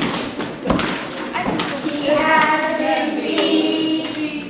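Children stamping their feet on the floor, a few dull thumps in the first second and a half, followed by a group of voices chanting a rhyme together.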